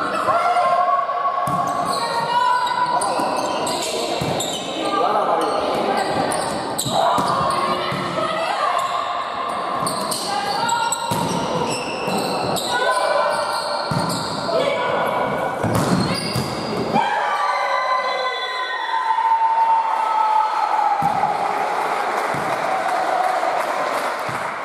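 Volleyballs being struck and bouncing on a hardwood gym floor, with players' voices and calls echoing through a large sports hall.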